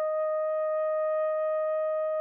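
Soprano saxophone holding one long, steady note.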